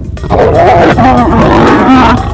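Lions snarling and growling loudly in an aggressive confrontation over rank within the pride, starting about a third of a second in.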